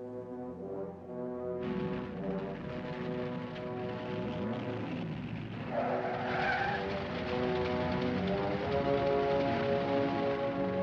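Orchestral film score with brass, over the noise of a car driving. About six seconds in, the car's tyres squeal briefly.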